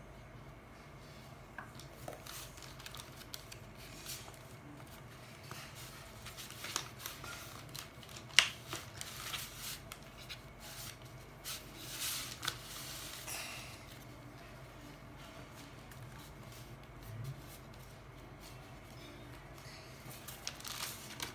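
Quiet rustling and tapping of a sheet of paper being handled, glued with a glue stick and folded, with one sharp click about eight seconds in.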